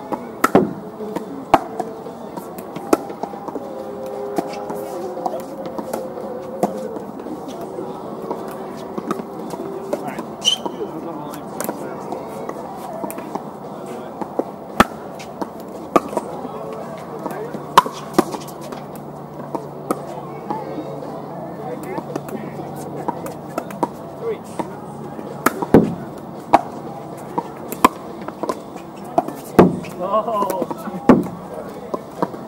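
Pickleball play: sharp, irregular pops of paddles striking the plastic ball and of the ball bouncing on the hard court, from this and neighbouring courts, with distant voices underneath.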